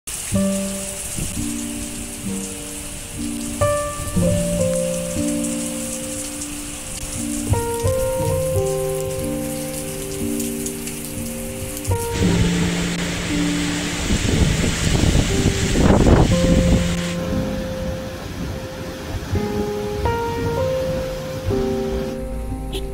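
Heavy rain and wind of a tropical cyclone, a steady rushing noise that swells louder a little past the middle and eases again. Background music of long held notes plays over it.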